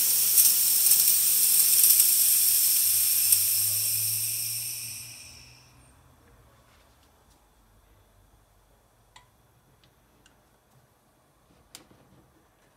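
Mr. Coffee steam espresso maker venting its leftover steam pressure after brewing: a loud, steady hiss that fades away about five seconds in and stops.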